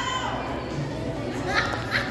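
A young woman's high-pitched wordless vocalizing: a held high note that ends just after the start, then short voice sounds near the end.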